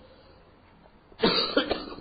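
A person coughing: a rough cough starting suddenly about a second in, followed by a shorter second one.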